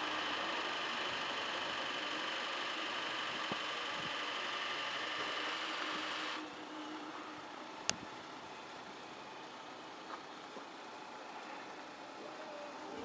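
Stretched Chrysler 300 limousine idling with a steady hum. The hum drops in level about six seconds in, and a single sharp click comes a little under two seconds later.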